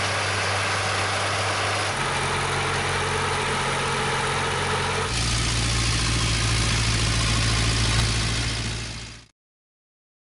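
Tractor diesel engines running steadily under working load, in three cut-together shots: first a Zetor 16245 pulling a cultivator, later an Ursus C-360 working with a lime spreader. The sound cuts off suddenly about nine seconds in.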